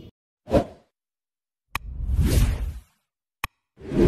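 Edited-in sound effects of a subscribe/bell end-card animation. A short whoosh comes about half a second in. Then a sharp mouse click is followed by a longer swoosh, another click comes, and a new whoosh starts near the end.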